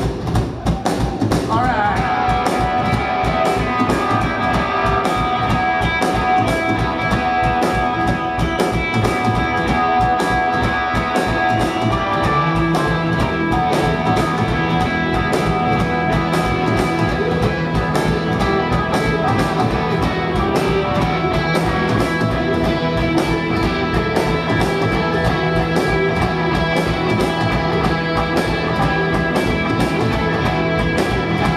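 Loud live rock band playing an instrumental passage with electric guitars and drum kit, recorded from the crowd. Guitar notes are held over a steady drum beat, and a low held note joins about twelve seconds in.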